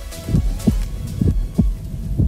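Heartbeat sound effect in a radio show's intro jingle: paired low thumps, lub-dub, about one pair a second, over a faint electronic drone.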